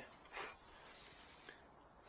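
Near silence, with one brief faint noise about half a second in and a tiny click about a second and a half in.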